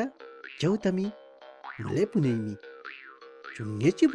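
A narrator speaking in Mapudungun in short phrases over soft background music with a steady held chord.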